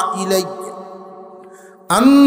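A man's chanted, sung preaching voice over a loudspeaker system: a held note fades away over about a second and a half as its echo dies out, and the chant starts again abruptly near the end.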